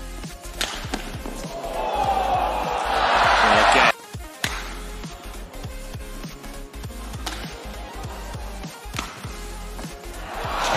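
Badminton rally: rackets striking the shuttlecock and players' shoes hitting the court in irregular sharp knocks. A crowd cheer swells to a loud peak as the point is won and cuts off suddenly about four seconds in, and another rally of shuttle hits follows.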